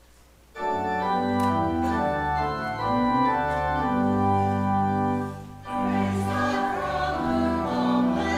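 Church organ starting to play about half a second in, with sustained, slowly changing chords. It breaks off briefly near the six-second mark and then goes on.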